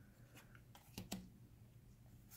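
Paper tarot cards handled in the hand: faint sliding and soft ticks as one card is moved from the front of the deck to the back, the clearest pair of ticks about a second in.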